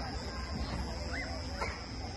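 A dog giving two short barks over a low murmur of people talking.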